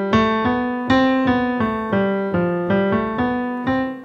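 Yamaha N1X hybrid digital piano playing a five-finger exercise one note at a time, stepping up and down at about three notes a second. The spacing between notes is a little uneven, a demonstration of rhythm that is not yet smooth.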